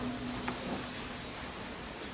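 A pause in a man's speech: faint, steady hiss of room tone, with the tail of his last word fading away at the start and a small click about half a second in.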